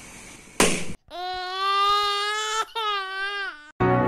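A short sharp bang about half a second in, from the compass gun bursting a colour-filled balloon. It is followed by a long, high-pitched wailing cry in two parts, most likely a dubbed-in crying sound effect.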